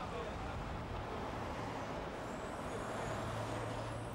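Steady street traffic noise from a large motor vehicle, with a low engine hum setting in about two seconds in.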